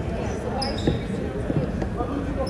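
A basketball bouncing on a hardwood gym floor, a couple of short thumps about a second in and again half a second later, in a reverberant gym with voices.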